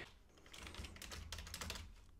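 Faint keystrokes on a computer keyboard: a quick run of key presses starting about half a second in.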